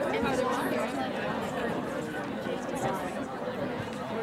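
Many people talking at once in a steady murmur of overlapping voices, with no single voice standing out.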